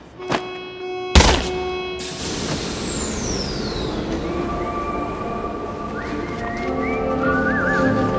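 A loud thud about a second in, followed by a long falling whistle, then soundtrack music with a whistled melody.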